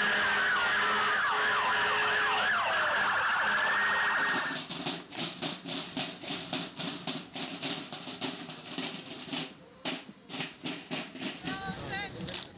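Several fire-engine sirens wailing at once, their pitches rising and falling across each other, until they break off about four and a half seconds in. Then a marching drum corps beating snare drums in a quick, even march cadence.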